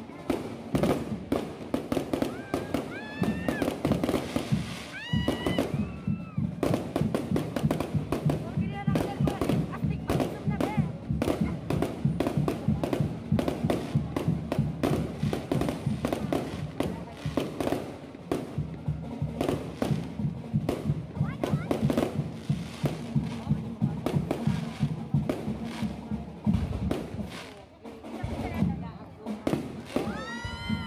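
Aerial fireworks display: a dense, continuous run of crackling and popping bursts, with a brief lull near the end.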